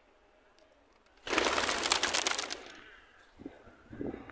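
A flock of feral pigeons taking off together: a sudden loud clatter of many wingbeats about a second in, lasting about a second and then fading.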